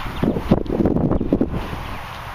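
Wind buffeting the microphone: a cluster of dull, loud gusts lasting about a second and a half, then a steadier breeze.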